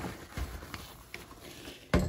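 Faint rubbing and a few soft knocks of a spill being wiped up on a countertop by hand. One sharp knock comes just before the end and is the loudest sound.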